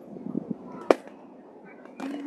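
A few dull knocks, then one sharp crack about a second in that stands well above everything else, over faint spectator background noise.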